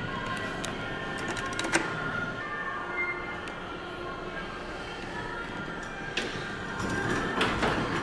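Background music playing in the store, with the elevator's stainless steel doors sliding open in the last second or two.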